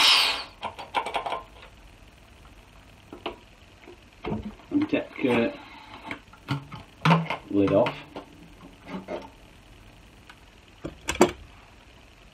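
A gas hiss from the Cornelius keg being vented cuts off just as it starts, then scattered metal clicks and knocks as the keg's lid is worked loose, with a sharper clack near the end as it comes free.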